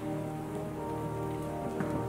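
Pipe organ holding soft sustained chords, over a rustling, shuffling noise from the congregation, with a small knock near the end.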